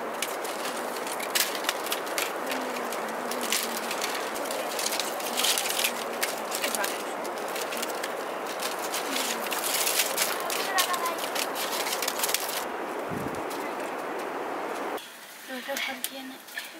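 Fresh green plant strips rustling and clicking as they are interlaced by hand into a woven mat, a dense run of small cracks and snaps over a rustle. It drops away about a second before the end.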